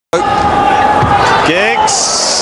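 Indoor futsal arena sound: the ball thudding as it is kicked on the hard court under steady crowd noise, with a held note for the first second or so. The audio cuts out completely for a split second at the very start, and a voice comes in near the end.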